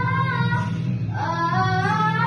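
Two girls singing a pop song together over a guitar backing track. A held note ends about a third of the way in, and a new phrase starts rising just after halfway.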